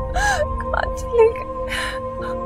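A woman sobbing, with a gasping, wavering breath near the start, small whimpers in the middle and another gasping breath near the end, over sustained background music.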